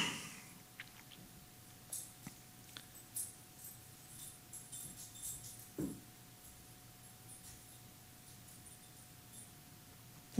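Faint handling sounds: a few light clicks and rustles over a few seconds, with a faint steady hum underneath.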